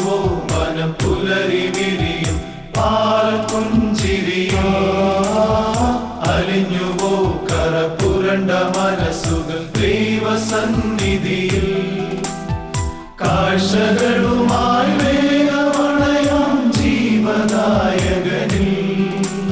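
Male choir singing a Christmas song in harmony over orchestrated backing music with a steady beat.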